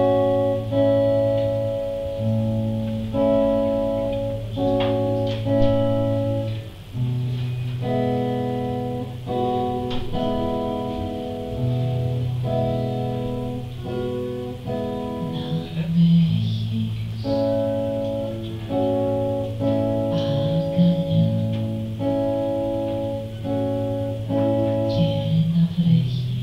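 A short, gentle song played live: sustained chords struck about every second or two and left to ring, over a steady low bass line.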